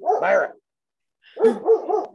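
A dog barking in an upset-sounding quick run of barks, about four a second, picked up over a video call; the sound cuts out briefly just before the run begins.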